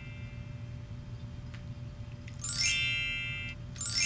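A sparkling 'magic' chime sound effect, sounded twice about a second and a half apart, each ringing bright and high and fading away. A faint steady hum comes before it.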